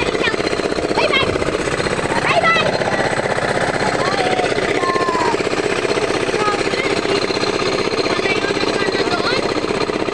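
A small engine running steadily with a fast, even chugging, with people calling out over it.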